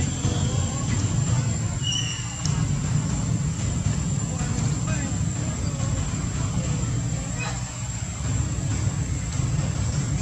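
Outdoor background ambience: a steady low rumble with faint voices talking in the background, and a brief high tone about two seconds in.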